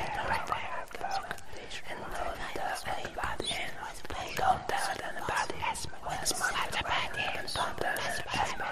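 Ghostly horror whispering: breathy, unintelligible whispered voices running continuously, dense with hissing sibilants.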